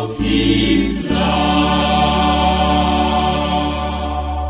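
Choir music ending a hymn: from about a second in, the voices and accompaniment hold one long sustained chord over a steady low bass note.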